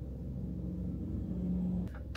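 A woman hums one long, low closed-mouth "mmm", its pitch stepping slightly partway through, over a steady low hum in the car cabin.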